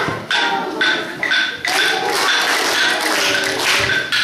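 Rhythmic percussion in a live performance: sharp, ringing taps about two or three a second, with pitched music or singing underneath.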